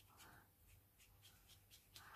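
Near silence, with faint soft brushing of a paintbrush laying watercolour paint onto wet paper.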